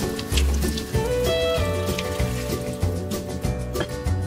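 Background instrumental music with a steady beat and held notes.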